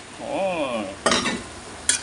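Stir-frying in a wok as noodles go in over greens and pork: a short sizzle about a second in, then a sharp clink of a utensil against the pan near the end.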